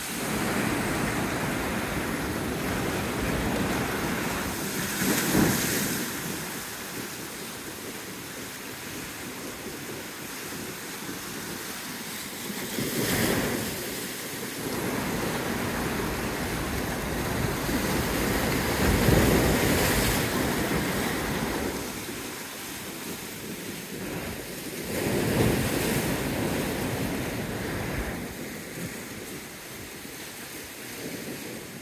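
Sea waves breaking on rocks and washing back, with a steady rush of surf that swells four times, about every six to seven seconds; the biggest wave hits about two thirds of the way through.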